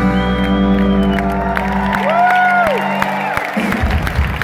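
Live rock band with electric guitars and drums holding its final chord, the low notes cutting off about halfway and the rest dying away soon after. Audience cheering and whooping rises over the chord's end.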